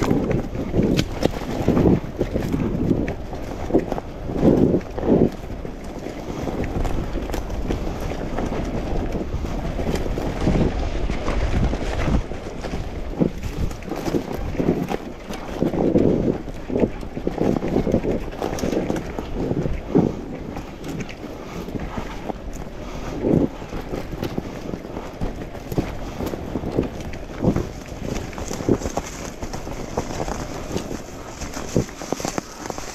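Wind buffeting the microphone, with irregular bumps and rattles from riding over a rough forest trail; a stronger gust of low rumble comes about a third of the way in.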